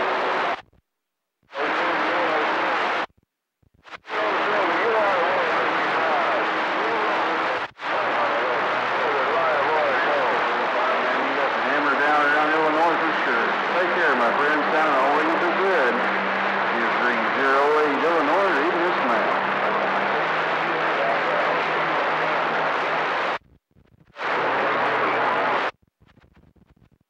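CB radio receiver picking up weak, distant skip transmissions buried in loud static, with faint warbling voices under the hiss and a low steady hum in some of them. The squelch opens and snaps shut about five times, each burst cutting off suddenly.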